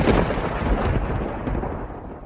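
Thunder rumbling, loud at first and fading slowly away.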